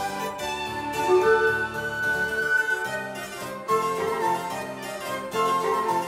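Harpsichord playing Baroque chamber music: a quick stream of plucked notes over held lower notes.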